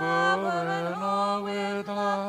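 A single voice chanting Byzantine liturgical chant, holding one long note after a slide up into it.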